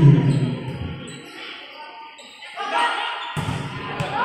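A volleyball being struck during a rally in an echoing gymnasium, with a sharp knock about three and a half seconds in. Players' and spectators' voices are heard at the start, die down after the first second and pick up again near the end.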